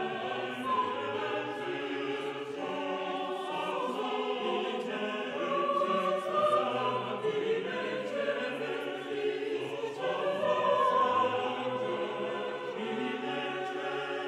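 A choir of several voices singing a slow chant together, holding notes that shift from one pitch to the next.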